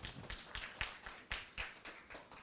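Faint, sparse applause from a small audience, about four claps a second, thinning out toward the end.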